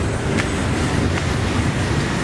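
Steady rumble of city street traffic, with motorbikes passing on the road below.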